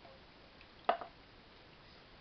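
A wooden spoon stirring soup in a stainless steel pot. There is one sharp knock a little under a second in and a fainter one right after; otherwise it is quiet.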